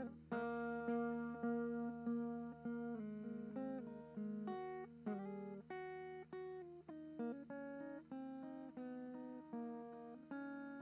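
Background music: a plucked guitar picking a gentle melody, about two notes a second, each note ringing and fading.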